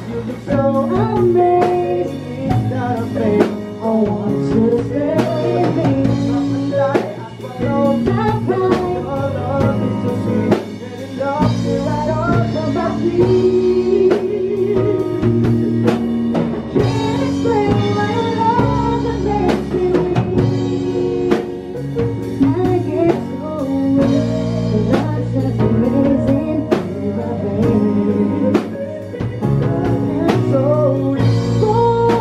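Live band playing a pop-rock song: drum kit, electric guitars, bass and keyboard, with a woman singing into a microphone and a man singing along.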